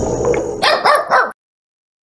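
Intro sound effects: a steady background, then three short animal-like calls, each falling in pitch, about half a second in, cut off abruptly into silence after about a second and a third.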